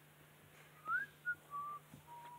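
A few faint whistled notes about a second in: a rising note, a short blip, then a slightly lower held note.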